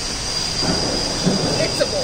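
Steady background hiss with a thin, high-pitched whine, and indistinct voices coming up from about halfway through.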